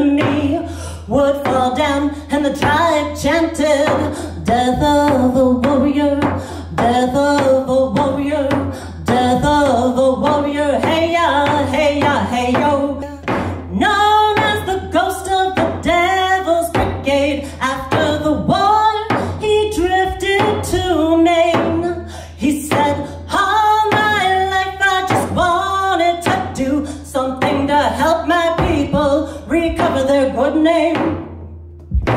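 A woman singing solo with her own steady beat on a homemade hand-held frame drum, struck with a beater. The drum has a synthetic head rather than animal skin, laced through holes drilled in its rim.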